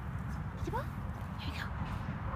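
A person saying "here" in a short, rising, coaxing voice to a dog, over a steady low rumble.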